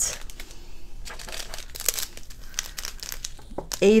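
Small clear plastic bags of diamond-painting drills crinkling as they are handled and set down, with irregular little crackles and ticks. A woman's voice starts speaking near the end.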